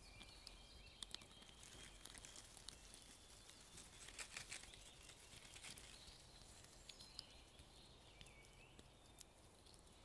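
Near silence: faint woodland ambience with faint high bird notes and scattered small clicks and crackles, a brief flurry of them about four seconds in.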